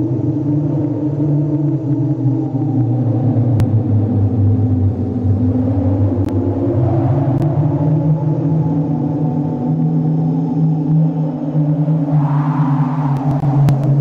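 Low, sustained ambient drone of a background music bed. It swells slowly about halfway through and again near the end.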